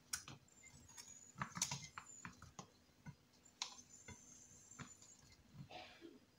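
Cherry tomatoes being tipped from a plastic bowl and set by hand into a glass baking dish of sliced potatoes. It makes faint, irregular light taps and clicks, a few louder ones a second or two apart.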